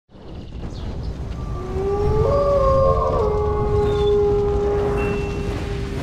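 Sound-effect wolf howl, several voices layered, gliding up and then held long and steady, over a low rumble.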